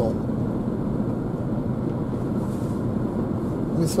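A car driving along a town road, heard from inside the cabin: a steady low rumble of engine and road noise.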